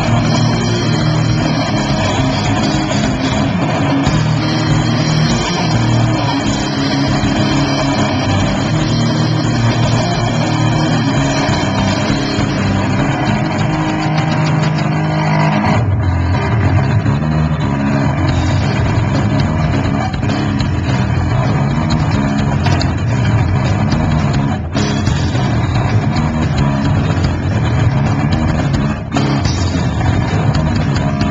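A live band playing loud, dense music with guitar. The low part changes about halfway through, and the sound briefly drops out twice near the end.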